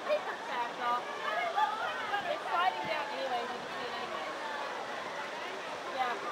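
Young children's voices chattering and calling, high-pitched and without clear words, over a steady background rush of noise; the voices are busiest in the first half and thin out after about three seconds.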